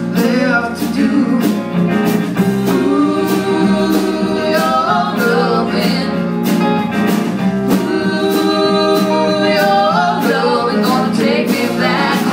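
Live rock band playing: electric guitars, bass and drums with a steady beat, and sung vocals over them.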